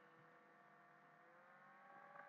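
Near silence: faint steady electrical hum.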